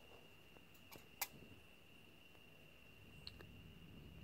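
Near silence: quiet room tone with a faint steady high-pitched whine and a few small clicks, the sharpest about a second in.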